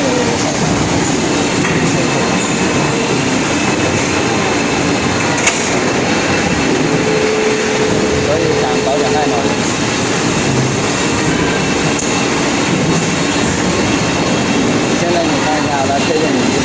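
Steady, loud machinery noise from a running plastic injection moulding machine and its conveyor belt, with a single sharp click about five and a half seconds in.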